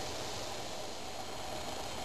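Homemade aluminum-can jet alcohol stove burning under a pot of water at a rolling boil: a steady, even hiss of flame and boiling water.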